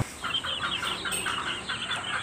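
Young chicks peeping: a quick, steady string of short, high chirps.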